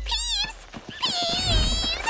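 Cartoon cat meowing twice: a short high mew, then a longer wavering meow about a second in.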